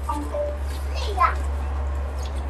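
A couple of brief high voice calls, short rising and falling glides, over a steady low hum.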